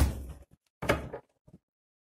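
A deck of tarot cards being scooped up and squared against a tabletop: two sudden sliding knocks, the first right at the start and the second just under a second later, each dying away quickly.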